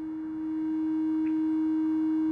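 Eurorack synth tone: a sine wave and a triangle wave from an Intellijel Dixie VCO at the same pitch, mixed together through a Circuit Abbey Invy attenuverter and offset module and not yet clipped. It holds one steady pitch, getting louder over the first second and then staying level.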